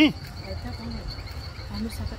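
A dog gives one short, loud bark right at the start, followed by a few faint low grunts, during rough play-wrestling. A steady, high-pitched insect chirping runs underneath.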